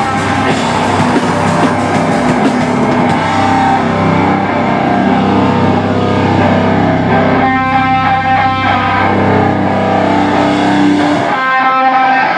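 Metallic hardcore band playing loud live, distorted electric guitars holding long chords over bass. About eleven seconds in the low end drops away and guitar rings on alone.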